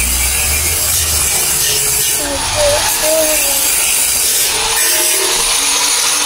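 A power tool running steadily on a steel staircase under construction: an even, harsh noise without a break.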